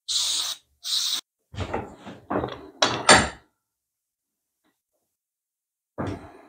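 Two short hisses of an aerosol spray can being sprayed, followed by a run of knocks and rattles as the metal and wooden clamp parts are handled in the bench vise.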